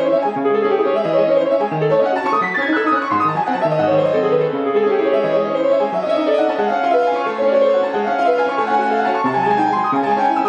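Hallé & Voigt WG 160 baby grand piano playing itself under its Baldwin ConcertMaster player system, keys and hammers driven with no one at the keyboard. A continuous piece of quick notes, with fast runs sweeping down the keyboard about two and a half seconds in and again at the very end.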